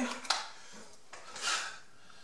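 Small tools being handled on a workbench: a sharp click about a third of a second in, then a short rustling hiss around the middle.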